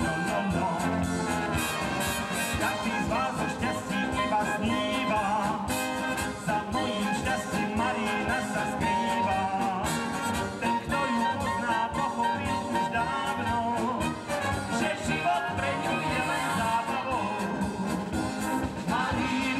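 Live brass band music: trumpets or flugelhorns leading over tuba and drums in a folk dance tune.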